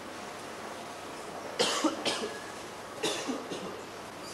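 A person coughing twice, about a second and a half in and again about three seconds in, over a steady background hiss.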